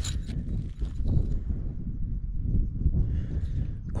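Wind buffeting the microphone as a steady low rumble, with a few light clicks and rustles as tent pegs are handled against the nylon stuff sack.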